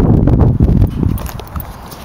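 Built 383 stroker V8 in a 1989 Pontiac Trans Am GTA running with a rough, uneven low exhaust beat. It is loud for the first second or so, then quieter.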